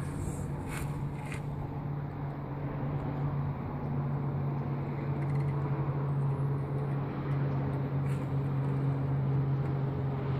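A steady low mechanical hum with faint rubbing and wiping as a cotton rag is run along the edges of a wet window and a squeegee is drawn across the soapy glass. There are a couple of light clicks about a second in.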